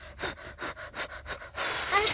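A person chewing food close to the microphone: a quick, even run of short chewing sounds, about four or five a second.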